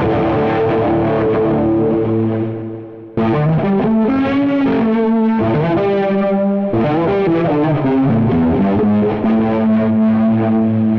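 Electric guitar played through Guitar Rig 5's 'Cheesy 80s Metal Lead' preset, which stacks Skreamer overdrive, chorus/flanger, Jump amp and reverb, giving a distorted, effected lead tone. A chord is struck and left to ring, fading out. About three seconds in a new phrase starts with sliding, bending notes, and about seven seconds in another chord is struck and held.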